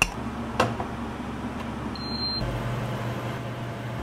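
Induction cooktop running with a steady low electrical hum. Two clicks sound in the first second, and a short high beep from its controls comes about two seconds in.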